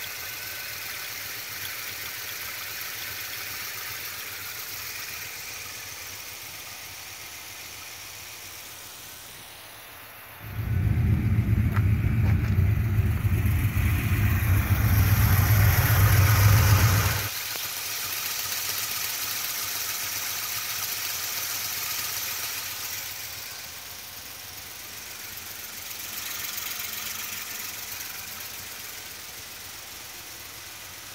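A 2009 Corvette Z06's LS7 7.0-litre V8 idling, heard close up in the open engine bay. About ten seconds in, a loud low rumble lasting about seven seconds covers it, then the steady idle returns.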